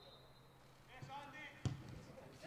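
A football struck hard with a single sharp thud near the end: the free kick being taken. Short shouts from players come just before it.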